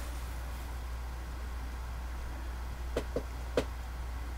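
Quiet room tone: a steady low hum with faint hiss, broken by a few faint short clicks about three seconds in.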